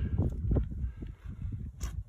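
Footsteps on dirt and rustling handling noise as the camera is carried up close to the target: irregular low thumps, with one short sharp click near the end.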